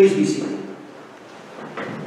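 A man's voice speaking in a reverberant room, loudest in the first half-second, then quieter with a short burst near the end.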